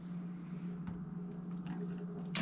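Steady low hum with a couple of faint, soft clicks, about a second in and near the end, as marinated meat is tipped out of a stainless steel mixing bowl.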